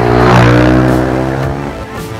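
Ohvale minibike's engine passing close by: it swells to its loudest about half a second in, then fades away as the bike leaves, with background music underneath.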